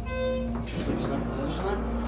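Schindler HT elevator's electronic signal tone: one short buzzy beep right at the start, lasting about half a second, then a steady low hum in the cab.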